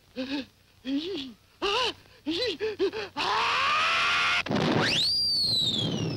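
Animated cartoon character's voice in short straining, groaning bursts for about three seconds. A loud rushing sound effect with a falling tone follows. Then, as he leaps, a whistle-like effect glides steeply up and slowly falls away.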